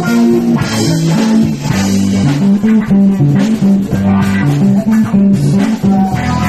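A live band playing amplified music: electric guitar over a bass guitar line of short, evenly paced notes.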